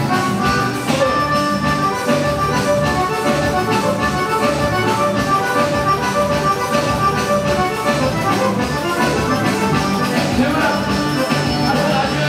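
Live forró played on a piano accordion, a lively melody of held notes over a steady dance beat.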